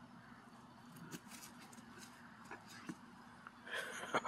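Quiet outdoor ambience with a few faint soft rustles and taps from a dog poking about in the grass. Near the end a quick run of loud, rapid, breathy pulses starts close by.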